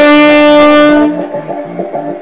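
Saxophone holding one loud, long note that stops about a second in, over a backing track with a repeating pattern that carries on after it.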